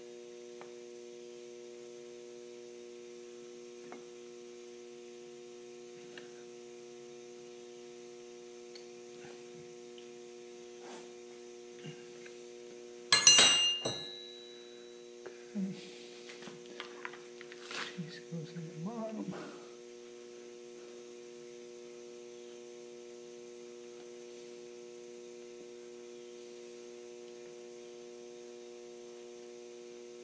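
Steady electrical mains hum, broken about thirteen seconds in by a loud metallic clank that rings briefly, as a metal tool or part is set down on the workbench. A few seconds of small clicks and handling noises follow as fuel pump parts are fitted together.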